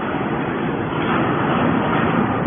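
Hydraulic metal scrap baler running as its ram pushes a compressed bale of metal turnings out of the chamber: a steady, loud mechanical drone of the hydraulic power unit, rising slightly about a second in.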